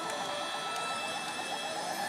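Pachislot machine's electronic sound effects, a steady faint warble, over the constant din of a pachislot parlor's other machines.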